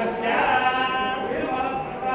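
Several voices chanting together in unison, holding long pitched notes that shift from one note to the next.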